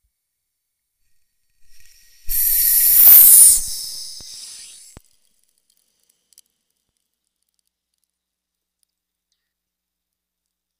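Sudden loud hiss of a high-pressure water chamber being vented from about 5,000 psi down to zero. It starts about two seconds in, is loudest for about a second, then fades over the next second and a half and ends with a click.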